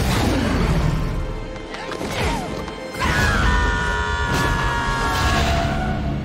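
Animated-film soundtrack: creatures growling at the start, then dramatic orchestral music with crashing impacts and whooshes from a fight. A held chord rises out of the music about halfway through.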